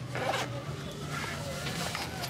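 A tall boot's zipper being pulled up by hand, with a quick rasp about a quarter second in.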